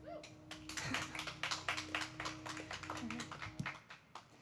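Scattered applause from a small group of people, uneven claps starting just after the opening and dying away near the end, over a faint steady low hum.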